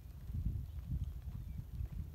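Hoofbeats of a horse going round a soft dirt arena, faint under a low, uneven rumble of wind on the microphone.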